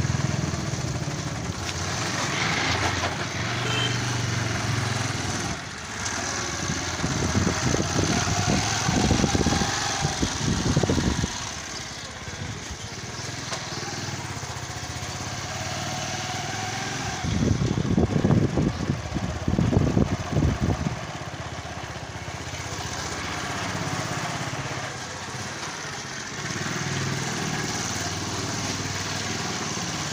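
A small engine running steadily, with two louder, rougher spells about a third and two thirds of the way through.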